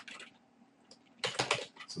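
Computer keyboard typing: a quick run of several key taps a little over a second in, as the word "end" is typed into the code.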